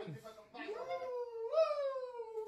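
A drawn-out, clean howl-like call. Its pitch slides slowly downward, jumps up again about a quarter of the way in and once more near the end, with a brief break near the start.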